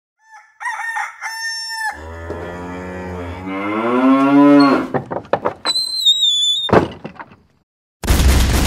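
Farm-animal sound effects: a rooster crows, then a cow gives a long moo that rises in pitch. A run of short clucks and a high, slightly falling whistled tone follow, and the sound fades out just before the end.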